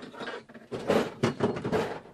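Rattling, noisy handling sounds of a bottle opener and a beer bottle being worked, with a denser stretch of about a second in the middle.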